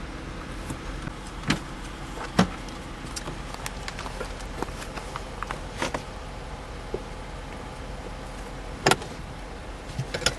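Scattered sharp plastic clicks and taps from handling a car's glove box and its damper, the loudest a little before the end, over a steady low hum.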